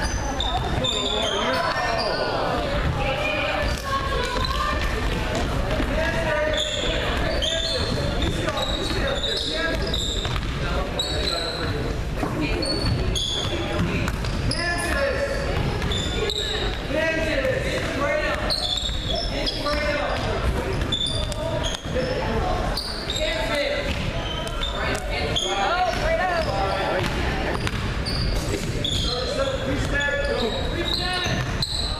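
Basketball bouncing on a hardwood gym floor during play, with players and spectators calling out, echoing in a large hall.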